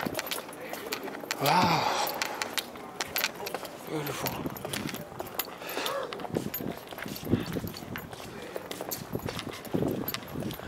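People's voices talking nearby, in short bursts, with scattered footsteps and small clicks and taps over a steady outdoor background.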